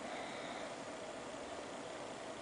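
Faint, steady background hiss of room noise, with no distinct events.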